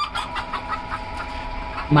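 Chickens clucking in the background: a run of quick, short clucks, a few per second.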